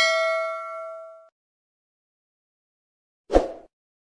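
Notification-bell 'ding' sound effect from a subscribe-button animation: a bright chime that rings and fades out over about a second. After a pause, a short dull thump near the end as the graphics vanish.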